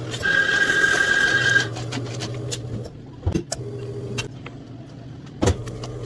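Espresso bar equipment at work while an iced Americano is made: a high whirring burst of about a second and a half, like a coffee grinder, then an espresso machine's pump humming low and steady in spells that stop and restart. Two sharp knocks, the second the loudest, come about three and five and a half seconds in.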